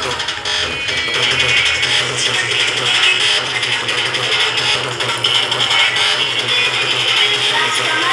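A song playing loudly through two bare speaker drivers, each driven by its own linked mini amplifier, both playing the same signal.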